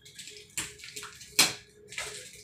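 Plastic wrapping on a rolled mattress crinkling and rustling as hands grip and pull at it, in several short bursts, the loudest about one and a half seconds in.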